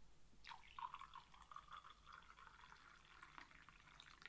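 Near silence: faint room tone, with a faint higher-pitched sound from about half a second in until shortly before the end.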